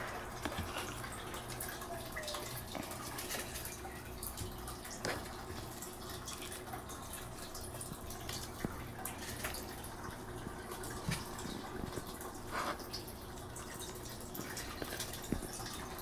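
Quiet room tone: a steady low hum with scattered faint clicks and taps.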